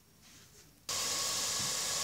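Steady hiss of a steel pot of water heating on the stove and starting to steam, not yet at a full boil. It starts suddenly about a second in, after near silence.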